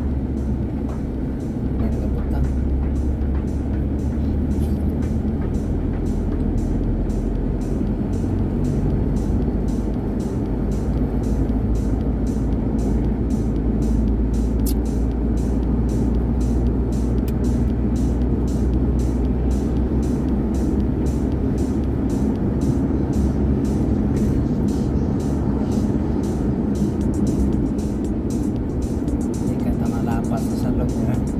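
Car engine and road noise heard from inside the moving vehicle as a steady low drone that shifts in pitch a few times, with music playing over it.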